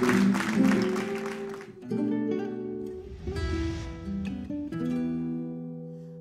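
Audience applause dies away in the first two seconds as a band plays a slow instrumental introduction of held notes with guitar.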